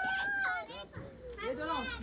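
Children's voices: one long high call in the first moment, then excited, broken chatter near the end.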